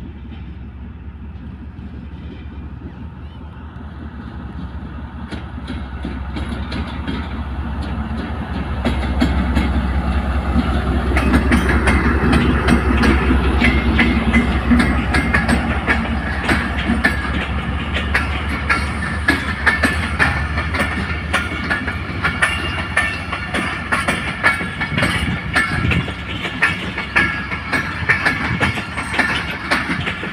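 Pakistan Railways diesel locomotive approaching, its low engine drone growing louder over the first ten seconds as it nears, then passing close. It is followed by passenger coaches whose wheels clatter in a rapid clickety-clack over the rail joints.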